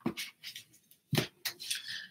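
Hardback books being handled and set down on a table: a few short knocks and rubs, the loudest a little over a second in.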